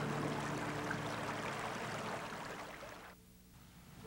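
River water flowing, with the last held low notes of background music dying away early on. The water sound fades out about three seconds in, leaving near silence.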